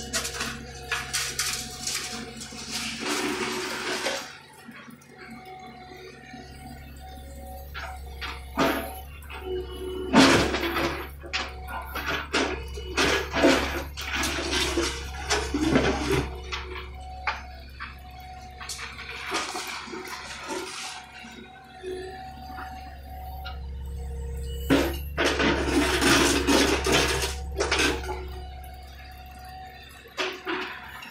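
John Deere 50D compact excavator running steadily while its bucket digs and scrapes through broken concrete rubble. Chunks of concrete grind and clatter in repeated bursts over the engine and hydraulic hum.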